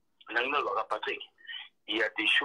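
Speech only: a person talking over a video-call connection, in short phrases with brief pauses.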